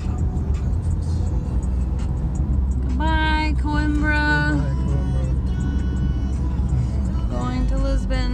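Steady low rumble of road and engine noise inside a moving car's cabin at highway speed. Held pitched tones sound over it about three seconds in and again near the end.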